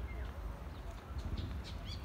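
Outdoor ambience: a steady low rumble of wind on the microphone, with birds chirping in short high notes, most of them near the end.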